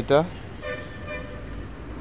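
A vehicle horn sounding once, one steady faint note held for a little over a second, starting about half a second in.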